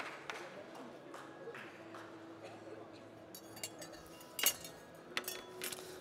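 Light clinks of glassware and metal bar tools on a counter during Irish coffee preparation, a few sharp taps with the loudest about four and a half seconds in, over a faint background of voices.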